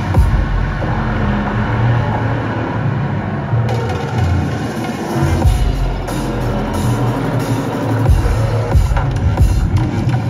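Electronic dance music with heavy bass, played loud over a venue's sound system during a live set. The deep bass drops out briefly about eight seconds in, then returns.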